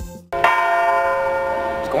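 A large church bell struck once, its many tones ringing on long after the strike.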